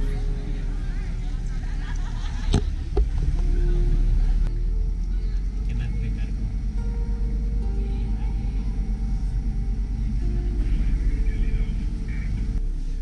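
Small canal boat's motor running steadily with a low rumble, and a sharp click about two and a half seconds in.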